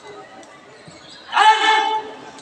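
A person's voice shouting one long call at a steady pitch, starting about one and a half seconds in, after a quieter stretch with a few faint thuds.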